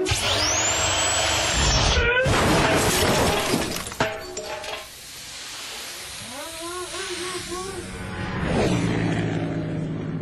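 A cordless impact wrench spins up into a high, rising whine, then a car rolls over with a loud crash and crunch of breaking parts, ending in a sharp knock. A music jingle comes in near the end.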